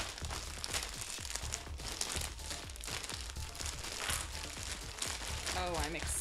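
A clear plastic bag of jigsaw puzzle pieces crinkling as it is handled, with the cardboard pieces rattling and shifting inside it. A voice comes in briefly near the end.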